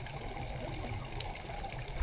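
Underwater reef ambience: a low steady water rumble with scattered faint clicks, and one sharper click at the very end.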